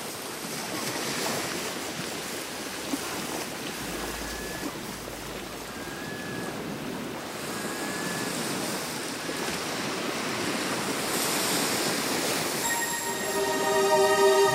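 A steady wash of rushing water, like surf, swelling and ebbing slightly, with three faint short high notes in the middle. Soft new age music with sustained tones fades in near the end.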